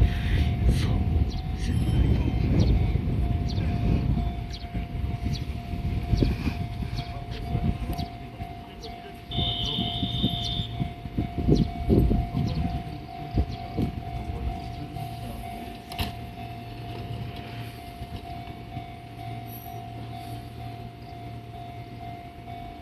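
Fujikyu 6000 series (ex-JR 205 series) electric trains standing at a platform, giving a steady whine over a low hum. Irregular low rumble comes and goes and is strongest in the first few seconds, and a brief high tone sounds about nine and a half seconds in.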